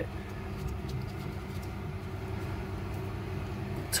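A steady low mechanical hum, with a few faint light clicks as the plastic cap of the magnetic system filter is screwed back in by hand.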